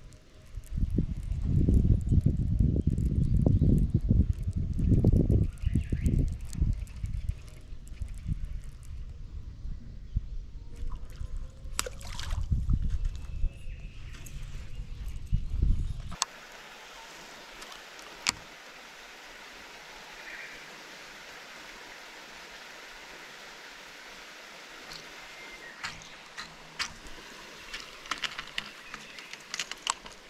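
Lakeside outdoor ambience. A heavy, irregular low rumble fills the first half and cuts off abruptly about halfway. A steady, quieter hiss with scattered light clicks follows.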